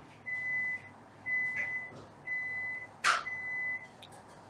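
Electronic beeping: a steady high beep repeating about once a second, four beeps of about half a second each. A short sharp noise cuts in just after three seconds in, louder than the beeps.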